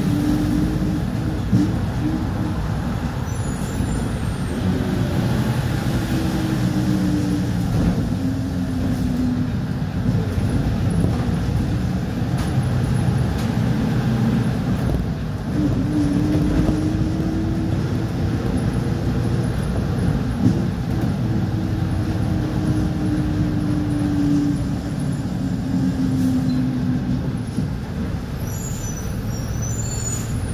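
Inside a moving city bus: its engine hum and road rumble, the engine pitch slowly rising and falling several times as the bus speeds up and slows down.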